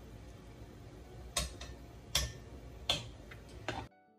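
A metal kitchen utensil knocks sharply against a wooden bowl of couscous four times, about three-quarters of a second apart, over a low steady room hum.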